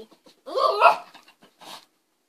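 Small dog, a miniature pinscher, giving a short, wavering vocal call, followed by a brief noisier sound near the end.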